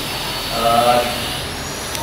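A man's brief hesitant "eh" over a steady background noise.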